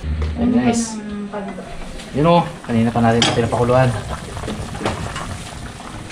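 A large pot of soup boiling hard on a gas stove, a steady bubbling hiss, with a man's voice breaking in a few times.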